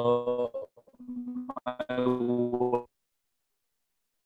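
Garbled audio from a breaking video-call connection: the lecturer's voice is frozen into a steady, buzzing held tone, breaks into choppy pitched fragments, and cuts out abruptly to dead silence a little before three seconds in.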